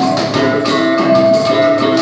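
Live marimba band playing: a large marimba struck with mallets carries the melody over electric bass guitar and a cajón beat.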